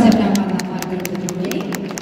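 Audience in a large hall as the dance music stops: a short voice or cheer at the start, then a run of quick hand claps, about five or six a second, over murmuring voices.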